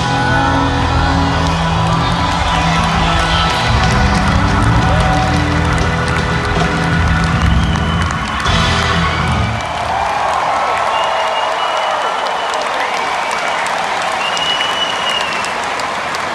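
Live rock band ending a guitar jam on a long, held final chord with heavy bass, which stops about nine and a half seconds in; a stadium crowd then cheers and applauds.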